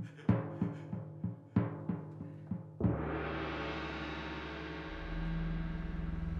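Dramatic background score: a run of about eight quick drum strikes, each dropping in pitch, then a heavier hit near three seconds that opens into a long, held chord, with deeper notes joining near the end.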